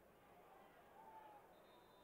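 Near silence, with only very faint background sound.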